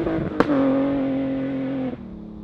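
Rally car engine at high revs on a gravel stage, briefly broken by a gear change with a single sharp crack about half a second in. It then settles on a slightly lower, steady note as the car pulls away, and cuts off abruptly just before the end.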